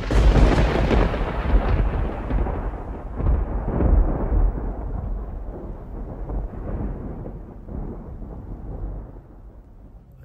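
Thunder: a sudden crack, then a long rolling rumble that swells a few times and slowly fades away.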